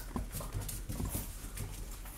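Boston Terrier puppies scuffling about on carpet and mouthing a plush toy: soft, scattered taps and rustles.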